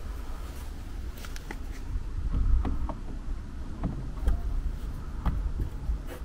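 Scattered light clicks and knocks of a plastic solar security light housing being hooked onto its mounting bracket on a wooden fence post, over a steady low rumble.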